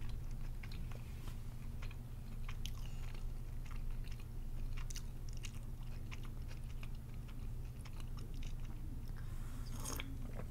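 Mapo tofu being chewed with the mouth closed: faint, scattered wet clicks. Near the end, a short sip of warm honey lemon tea from a glass jar.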